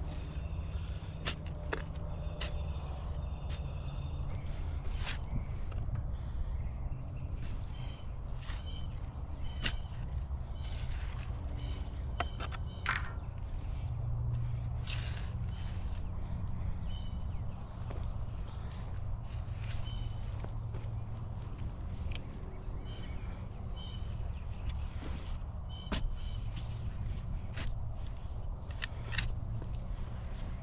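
A shovel digging into soft, loose compost, with irregular scrapes and knocks as the blade cuts in and the soil is tossed aside.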